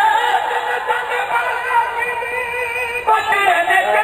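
A man's voice singing verse in long, drawn-out held notes, amplified through a microphone and loudspeakers; the pitch steps to a new note twice.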